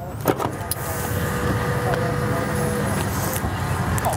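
Power side door of a Braun Ability MXV wheelchair-accessible SUV opening after the key-fob command: a click about a third of a second in, then a steady electric motor whir with a faint steady whine through the middle as the door drives open.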